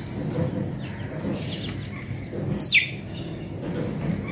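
A bird's single short, high chirp that falls sharply in pitch, about two-thirds of the way through, with fainter chirps a second before it.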